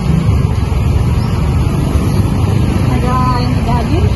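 Loud, steady low rumble of outdoor background noise, with a few faint voices over it.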